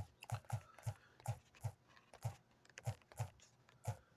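Faint fingertip taps on a smartphone touchscreen while typing on its on-screen keyboard: about a dozen short, uneven taps, roughly three a second.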